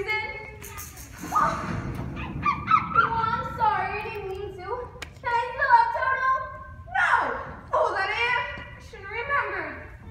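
Young actors' voices speaking stage dialogue; the words are not clear. A short stretch of low noise comes about a second in.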